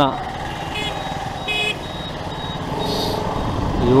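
Slow, congested road traffic heard from a motorcycle: engines running, with two short horn beeps, the second about one and a half seconds in.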